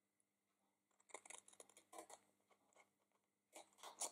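Faint snips and crunches of small paper scissors cutting slits into cardstock: a short run of cuts about a second in and another just before the end.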